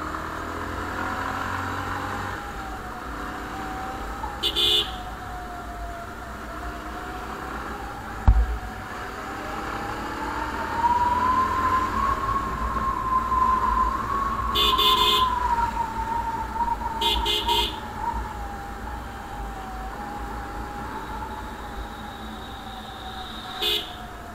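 Motorcycle engine running on the move, its whine slowly rising in pitch through the middle as the bike speeds up, then easing back down, over low wind rumble. The motorcycle horn gives short beeps several times, in quick pairs near the middle and once near the end, and there is a single sharp thump about a third of the way in.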